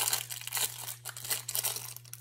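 Plastic crinkling and crackling, with small clicks, as tangle fidget toys and their individual plastic wrappers are handled.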